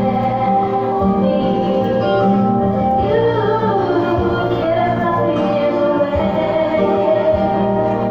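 A group of young children singing a slow song together with accompanying music.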